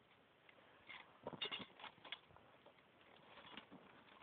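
Faint clicks and scrapes in two short clusters, about a second in and again near the end, over near silence.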